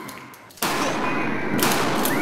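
Two shotgun blasts about a second apart. The first cuts in suddenly about half a second in, and the room echoes loudly between the shots.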